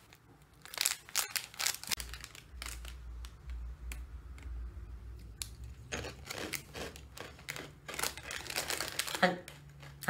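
Clear plastic snack bag crinkling as it is handled and torn open, in crackly bursts about a second in and again from about six seconds in.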